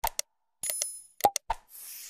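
Sound effects of a like-and-subscribe button animation: a pair of sharp mouse clicks, then a ringing notification-bell ding a little after half a second in. More clicks and a pop follow, then a whoosh near the end.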